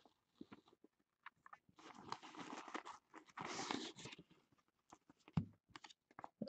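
Faint rustling and crinkling from hands opening a cloth drawstring bag and drawing out what is inside, with one soft thump near the end.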